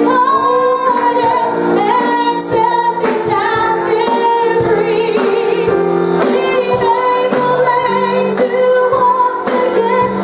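Worship music: a woman singing a slow melody with vibrato over long held chords and a band beat.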